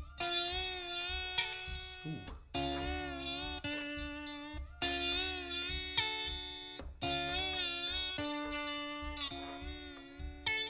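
Telecaster-style electric guitar played with a glass slide in standard tuning: a repeating slide riff of notes slid into and held with a wavering vibrato, a new note roughly once a second.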